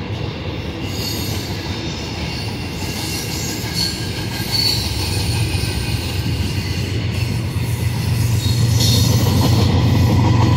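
Double-stack intermodal well cars rolling past, steel wheels on the rails with a squeal now and then. Near the end a low diesel engine drone builds and the sound grows louder as a locomotive placed in the train draws near.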